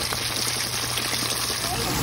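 Flour-dredged chicken pieces deep-frying in hot canola oil in a Dutch oven: a steady crackling sizzle.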